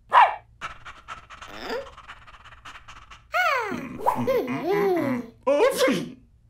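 A cartoon dog's voice: a sharp bark just after the start, then wordless pitched cries that slide up and down.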